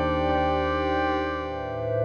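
Yamaha DX7 IID FM synthesizer playing a patch as a sustained, held chord of several notes. The chord fades a little, and a new chord comes in near the end.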